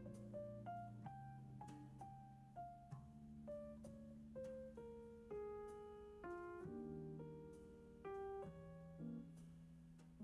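Soft background piano music: a slow melody of single notes over held low chords.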